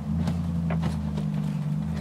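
A steady low motor hum at an even pitch.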